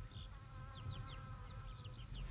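Bee buzzing, a faint steady hum, with short, quick bird chirps and tweets over it.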